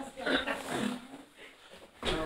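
Faint, distant talk in a meeting room during the first second, dying away to quiet room tone.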